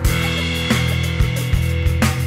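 Instrumental rock music: distorted, buzzing chords held over a steady beat.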